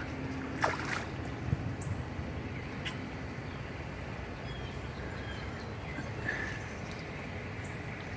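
Steady low outdoor background rumble, with a sharp pop about a second in and a softer thump shortly after.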